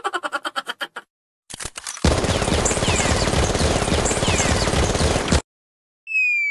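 Sound-effect audio: a fast stuttering run of pitched pulses fading out over the first second, then a few clicks and about three seconds of dense rapid-fire, machine-gun-like noise that cuts off abruptly.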